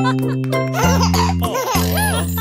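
Children's song music closing on a few held synth chords, with cartoon children giggling and laughing over it from about half a second in.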